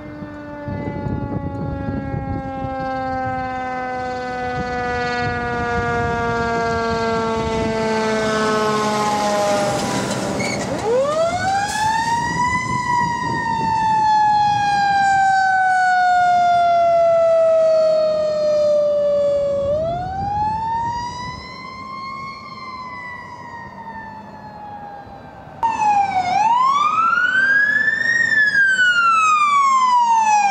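Fire engine sirens. For the first ten seconds a siren slides slowly down in pitch, then a wail siren rises and falls in long, slow sweeps; near the end a louder siren cuts in suddenly, wailing in quicker rise-and-fall cycles.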